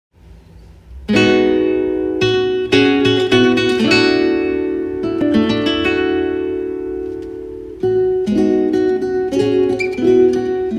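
Solo classical guitar playing plucked chords and single notes that are left to ring and slowly fade. It comes in about a second in, dies down a little, and picks up again with a fresh chord just before the eight-second mark.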